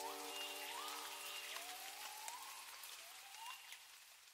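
Faint rain-like hiss with sparse small crackles, left after the music has stopped, and a few soft rising tones in the first couple of seconds. The hiss grows fainter over the second half.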